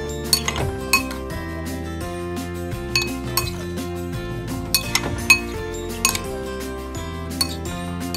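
A metal spoon clinking against a bowl at irregular moments while tossing sliced white radish, the sharpest clink about five seconds in, over background music with sustained tones.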